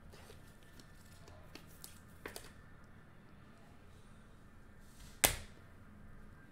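Trading cards being handled and set down on a tabletop: soft rustling with a couple of light clicks, then one sharp tap about five seconds in as a card is put down.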